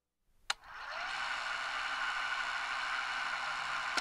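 A sharp click, then a small electric motor spinning up and running with a steady whir.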